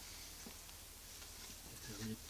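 A few faint clicks and scratches of fingernails picking at the protective backing film on the adhesive strip of a plastic spoiler, trying to lift it, over a low steady hum.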